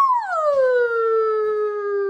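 A person's long, high falsetto "woo-hoo" cheer: the "hooo" is drawn out, sliding slowly down in pitch and held, an excited whoop.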